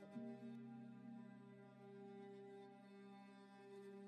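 Faint background music of sustained, held chords that change to a new chord a moment after the start.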